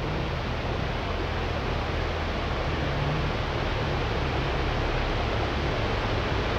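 Steady rushing of a rocky mountain river and a small waterfall, an even unbroken wash of water noise with a low rumble under it.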